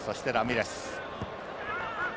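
Stadium sound from a football match: steady crowd noise with a voice calling out briefly near the start and again near the end, and a single dull thud about a second in.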